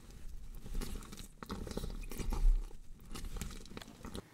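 Irregular crackling and crunching noise over a low rumble that swells about two and a half seconds in.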